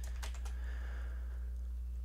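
Computer keyboard keys tapped a few times near the start, over a steady low hum.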